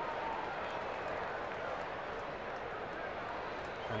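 Steady background murmur of a ballpark crowd, with no distinct cheers or impacts.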